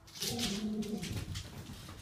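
A puppy gives a short, low, drawn-out grumbling call over the rustle of bedding and movement close to the microphone.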